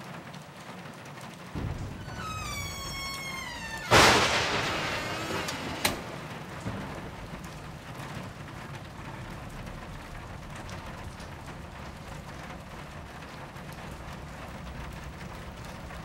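Steady rain through a thunderstorm: a low rumble starts, then a loud thunderclap about four seconds in rolls away over several seconds, with a sharp crack about two seconds later. Just before the clap, a short high-pitched cry falls in pitch.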